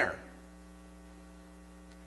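Steady electrical mains hum, a set of even, unchanging tones, left audible in a pause in speech after the tail of a man's word at the very start.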